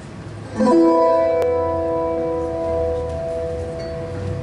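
A tiple, the Colombian twelve-string in four triple courses, strummed once about half a second in, the chord left ringing and slowly fading.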